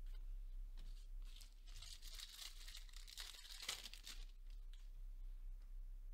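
Faint rustling and crinkling of chrome trading cards being handled and slid through the hands.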